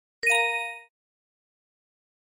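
A single short bell-like chime sound effect, struck once and ringing out in well under a second, marking the switch to the next vocabulary card.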